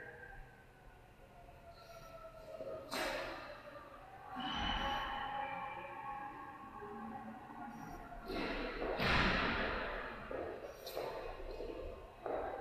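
Gallery room ambience: faint indistinct voices with a few rustling, shuffling swells of noise.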